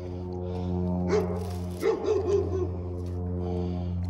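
A steady low droning hum, with a few short calls about one second in and again around two seconds in.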